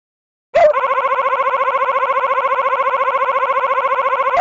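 Synthetic text-to-speech voice making a crying sound: after a short silence, one long, flat-pitched wail with a fast flutter, bending in pitch briefly where it starts and where it ends.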